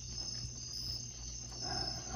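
Crickets chirping in a steady night chorus, with a low steady hum beneath.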